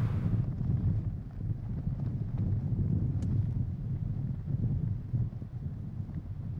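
Wind buffeting an outdoor microphone: a low, gusting rumble that rises and falls.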